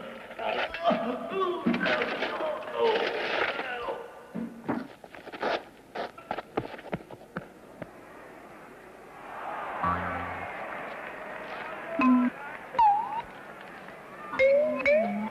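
Voices making sounds without clear words, then a run of sharp, irregular knocks, with more voice sounds near the end.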